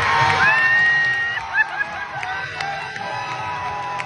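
Audience cheering and whistling, with some clapping, as the dance music cuts off at the start. One long, loud whistle comes about half a second in, followed by several short whistles.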